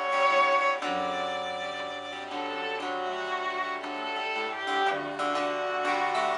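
Acoustic fiddle playing a folk tune in long bowed notes, with guitar accompaniment underneath.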